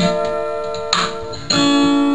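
Acoustic guitar strumming: three chord strokes, each left to ring.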